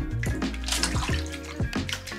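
Background music with a regular beat over water sloshing and splashing as hands rinse cleaned razor clam meat in a bowl of water in a sink.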